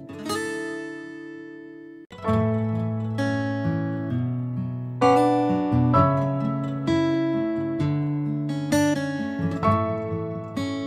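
Background music on acoustic guitar: plucked notes and chords ringing out, with a brief break about two seconds in.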